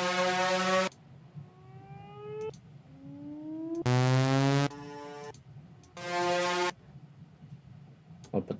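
Synth uplifter (riser) samples auditioned one after another, each cut off in under a second: a steady synth tone, then two tones sweeping upward in pitch, then two more short steady synth tones.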